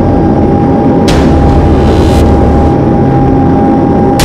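Aircraft engine running, heard from inside the cockpit while the plane rolls on the runway: a loud, steady low rumble with a steady high whine, and a couple of short bursts of noise about one and two seconds in.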